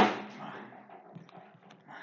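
A sudden knock right at the start, then fainter rustling and a few small clicks of a person handling things and shifting about close to the microphone, dying away near the end.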